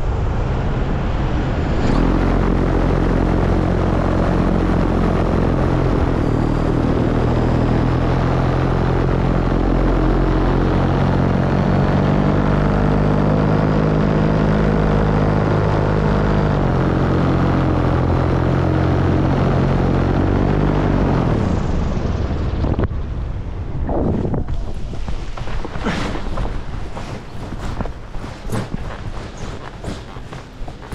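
Paramotor engine and propeller running steadily in flight, then throttled down and cut off about 21 seconds in. After that, wind rush and a run of short thuds and scuffs as the pilot lands on foot.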